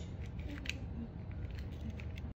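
A few light metallic clicks from a sliding-door mortise lock body being handled, the clearest about two-thirds of a second in, over a steady low rumble.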